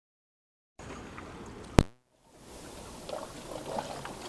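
Silence at first, then faint outdoor background noise, broken a little under two seconds in by one sharp, loud click and a brief dropout: an edit splice. Afterwards calm harbour water lapping gently, with small rustles.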